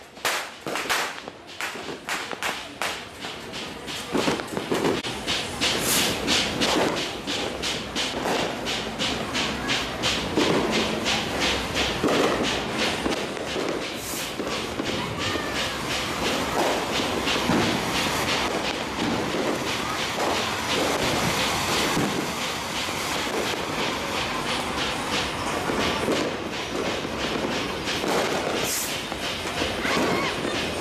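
A string of firecrackers going off in rapid succession: separate sharp bangs a few times a second at first, then from about four seconds in a dense, continuous crackle of explosions.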